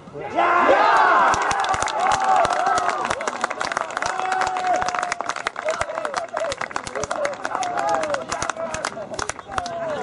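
Small crowd of spectators and players cheering and shouting for a goal, with clapping. It breaks out suddenly just after the start and carries on.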